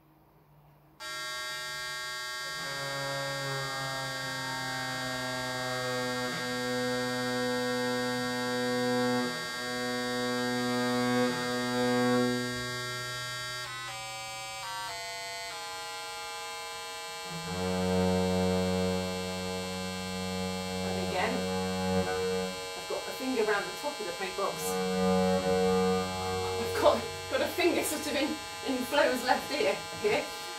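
An electronic tuning box sounding a steady reference drone, starting about a second in, while a bass viol string is bowed against it to bring it into tune. Midway the reference pitch changes and another note is bowed against it. Near the end come many short sharp scratches and clicks over the drone.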